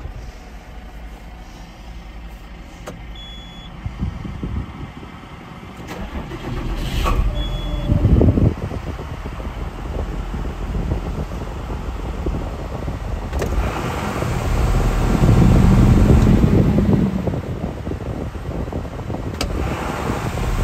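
John Deere 6615 tractor's six-cylinder diesel engine, heard from inside the cab, idling with the tractor stationary. Its revs swell briefly about eight seconds in and again for a couple of seconds in the second half, then start rising near the end.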